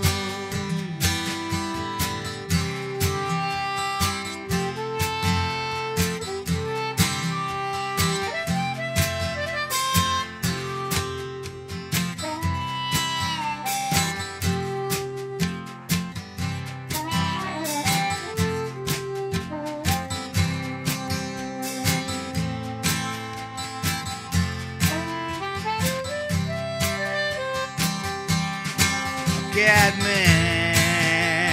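Instrumental break: a harmonica playing a melody with held and bent notes, cupped against a handheld microphone, over a strummed acoustic guitar keeping a steady rhythm.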